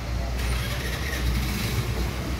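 Road traffic nearby: a steady low vehicle rumble, with more hiss coming in about half a second in.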